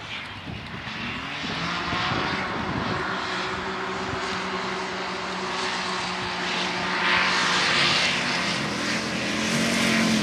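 Engine of a 4x4 off-road competition vehicle running hard as it races across a field. The engine note climbs about two seconds in, holds fairly steady, and grows louder around seven seconds in.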